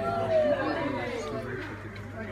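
Indistinct chatter of several people talking at once, no words clear.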